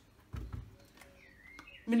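A dull low thud as courgettes are set down on a kitchen counter about a third of a second in, followed by a few faint handling clicks.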